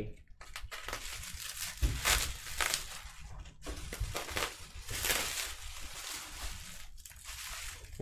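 Bubble wrap around a baseball bat crinkling and rustling as the wrapped bat is handled and lifted in a cardboard box, with irregular soft crackles and light knocks.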